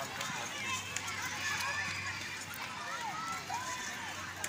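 Many voices shouting and calling out over one another across an open field, a crowd of boys and young men on the run.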